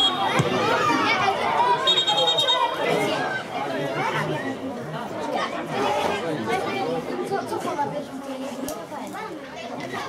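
Voices of players and onlookers calling out and talking, with a short blast of a referee's whistle about two seconds in, stopping play for a player who is down after a foul.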